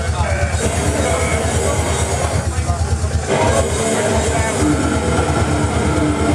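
Live slam death metal: heavily distorted electric guitar over rapid, even double-kick drumming, about ten beats a second, loud and distorted on the camera microphone. The kick pattern breaks off briefly about four seconds in.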